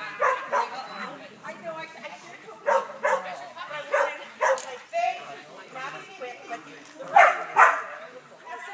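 A dog barking excitedly while running an agility course: short, sharp barks, often in quick pairs, about nine in all, with the loudest pair near the end. Faint voices in the background.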